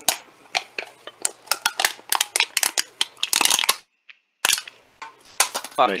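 Metal cans being crushed: a dense run of sharp crackling and crinkling clicks, with a brief pause about four seconds in before more crackling.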